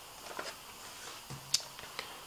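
A pause in a man's speech: quiet room tone, with a brief low voiced murmur a little over a second in and a single sharp click just after it.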